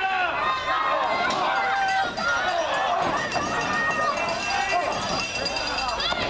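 Live crowd at a wrestling match, many voices shouting and cheering over one another without letup.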